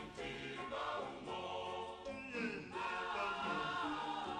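Soft background choral music: a choir singing held notes.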